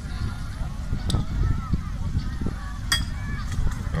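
Indistinct voices of people chattering in the background over a steady low rumble, with two sharp clicks, one about a second in and one near three seconds.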